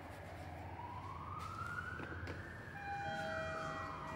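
A siren wail: one tone slowly rising for about two seconds, then falling back. About three seconds in, a chime of several steady tones rings over it, fitting a lift arriving.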